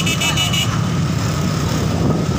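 Many motor scooters riding together in a convoy, a steady engine rumble picked up on a phone microphone, with voices mixed in and a brief high-pitched tone near the start.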